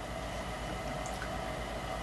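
Quiet, steady background: a low hum under faint room noise, with no distinct event.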